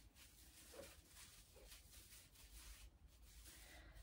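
Near silence: room tone, with a few faint rustles as gloved hands bend the branches of an artificial Christmas tree into shape.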